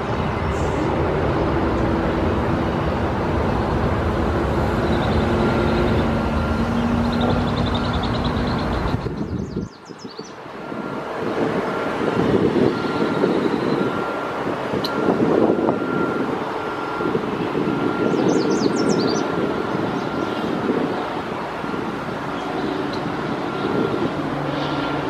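Steady road-traffic noise from vehicles crossing the bridge, dropping away sharply for a moment about ten seconds in, then resuming. A faint steady high tone runs through the second half, and short high chirps come twice.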